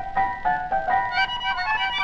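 Instrumental passage of a 1934 tango orchestra recording: a quick run of short, detached high notes over a thin bass, with no singing.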